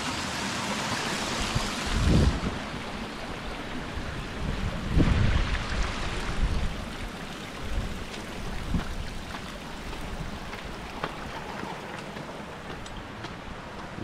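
A shallow, rocky mountain stream running, its rushing noise fullest in the first couple of seconds and then fading. Two low rumbling bumps come about two and five seconds in.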